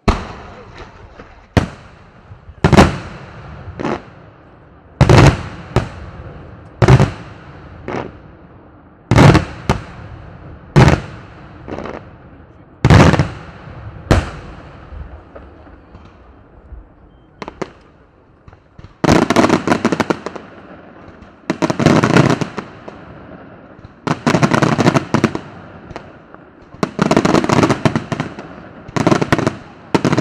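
Aerial firework shells in a daytime display: a run of single loud bangs about a second apart, each trailing an echo. About two-thirds of the way through, this gives way to rapid crackling volleys of many small reports, each lasting a second or so.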